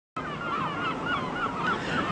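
Gulls calling: a run of wavering, gliding cries over a low background hum.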